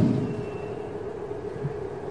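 Pause in a man's talk: the end of his last word fades away at the very start, then only a steady low background hum of the room.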